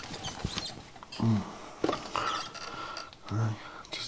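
Small clicks and rustling from hands moving about a cluttered electronics workbench, with two short murmurs of a man's voice.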